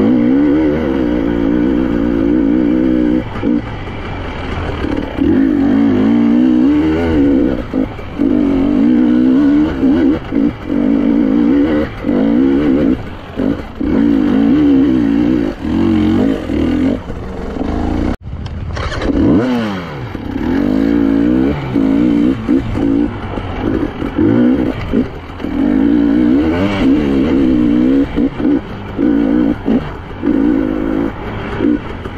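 A KTM 300 EXC two-stroke single-cylinder enduro engine being ridden on a trail, its note rising and falling as the throttle is opened and closed, with frequent short dips where the throttle is shut. There is an abrupt break in the sound about eighteen seconds in.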